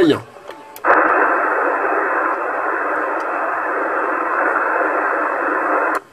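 CB transceiver on 27 MHz single sideband putting out a steady band of static hiss through its speaker. The hiss comes on abruptly about a second in and cuts off abruptly at the end.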